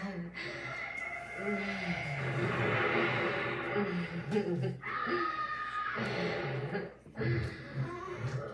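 A woman's voice from the music video's spoken intro on the TV, with faint music beneath.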